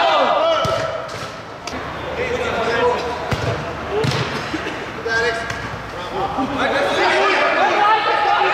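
Men shouting across a minifootball pitch, with a few sharp knocks of the ball being kicked.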